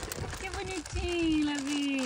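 A high-pitched voice speaking or calling, no clear words, ending in one long drawn-out sound that falls slowly in pitch.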